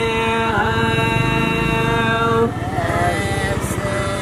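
Unaccompanied Deuda folk singing: a voice holds one long sung note that wavers about half a second in and breaks off about two and a half seconds in, followed by quieter, wavering vocal phrases. A low rumble sits underneath around the middle.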